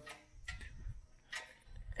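Faint, light clicks and knocks of a steel cultivator shield being wiggled by hand on its mount, showing its play.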